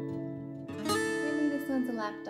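Acoustic guitar music: strummed chords ringing out and fading, then a fresh strum about a second in.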